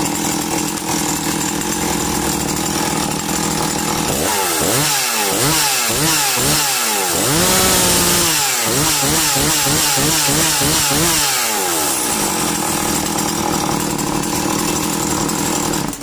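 Husqvarna 340e two-stroke chainsaw running just after being pull-started: it idles, is revved up and down repeatedly from about four seconds in, with one longer high rev near the middle, settles back to idle, and cuts off at the very end.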